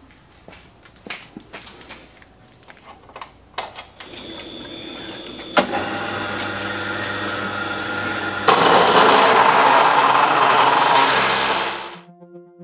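Cold cut saw cutting steel tube: a few knocks as the tube is set in the vise, then the saw's motor and coolant start running steadily about four seconds in, louder after a sharp click a second and a half later. From about eight and a half seconds the slow-turning, coolant-fed blade bites into the steel, much louder, before the cut dies away near the end.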